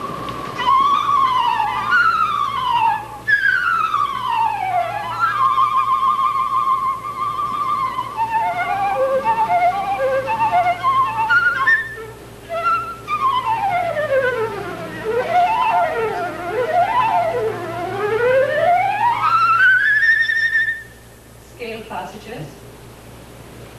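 Solo concert flute played live: fast scale runs sweeping down and up, trilled notes and a passage of short, detached notes, showing how agile the instrument is. The playing stops about a second before the end.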